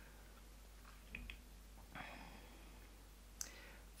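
Near silence: room tone, with faint brief sounds about a second in and one small click shortly before the end.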